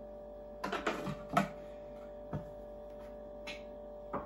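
Plastic lid set onto a Thermomix kitchen machine: a quick cluster of clattering clicks and knocks about a second in, then a couple of single clicks.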